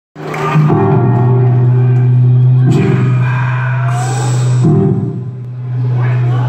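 Live hardcore punk band playing loud: distorted guitar and bass hold low chords that change about every two seconds.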